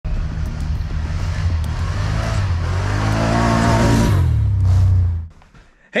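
ATV engine running and revving, its pitch rising and then falling in the middle; it fades out just after five seconds.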